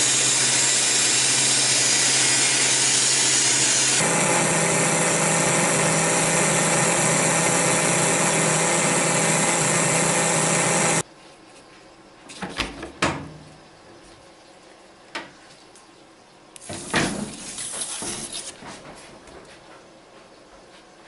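Harvest Right freeze dryer's oil-free vacuum pump running loud and steady with a low hum and a hiss, during its post-cycle venting run. About eleven seconds in it cuts off suddenly, followed by a few short knocks and a scraping of metal trays as the dryer's door is opened.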